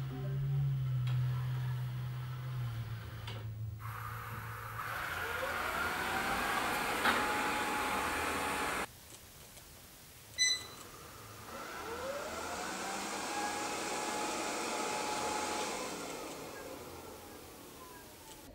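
erabros RS1 robot vacuum starting up: its motor spins up with a rising whine that settles into a steady run with a rushing hiss, then stops abruptly. After a short beep it starts again, whining up to speed and fading near the end.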